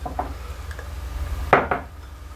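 Light handling sounds of a glass jug with a metal spoon in it being lifted off a stone countertop, over a low steady hum, with a brief louder sound about one and a half seconds in.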